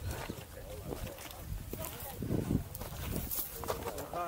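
Irregular footsteps on a loose stony dirt trail while walking downhill, mixed with hikers' voices talking.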